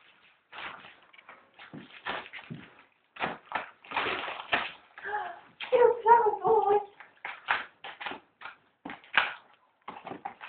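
Wrapping paper being torn and rustled by Red Setter dogs opening presents: irregular short ripping and crinkling noises, with a short pitched sound around the middle.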